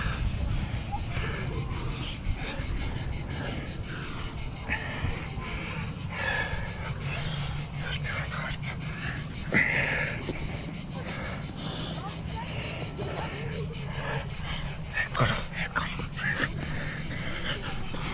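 Insects chirring steadily in a high, finely pulsing band, over a constant low rumble. Scattered taps and scrapes come through, with a few sharper knocks, one of the loudest about halfway through.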